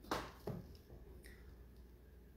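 Two brief soft knocks and rustles in the first half second as a large glass jar with a plastic lid is reached for and picked up, then faint room tone.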